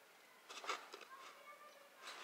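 Near silence, with a faint click just under a second in and a few faint high tones around the middle.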